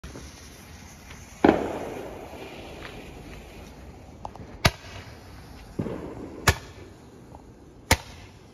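Fireworks going off: one loud boom about 1.5 s in that fades away slowly, then three sharp cracks over the last few seconds, with a few smaller pops between.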